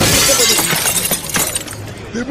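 A loud crash of shattering glass that starts suddenly and fades away over about two seconds.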